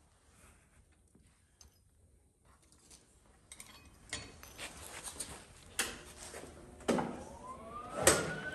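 Small steel brackets and a welder's ground clamp handled on a concrete floor: a few sharp metal clinks and knocks after a quiet start. A tone rising in pitch and levelling off begins near the end.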